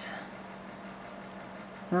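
Steady low background hum with faint hiss: room tone, with no distinct event, until a voice resumes right at the end.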